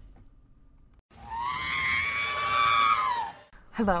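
A single long, high-pitched scream-like cry starting about a second in, held steady for over two seconds and dipping in pitch as it ends.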